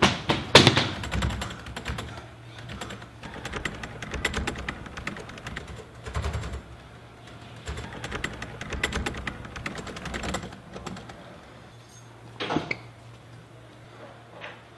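Rapid, irregular run of small clicks and taps, dense like typing, over a low steady hum, with a louder knock at the start and another near the end.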